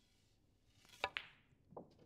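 Snooker shot played as a stun shot: the cue tip clicks against the cue ball about a second in, and the cue ball clicks sharply into the black a moment later. A duller knock follows about half a second after the contact.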